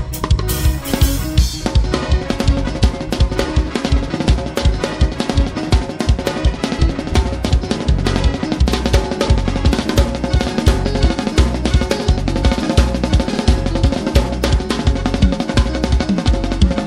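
Live band playing an upbeat groove: a drum kit with quick, steady kick and snare hits over held keyboard chords. A burst of bright high hiss runs through the first two seconds, then stops.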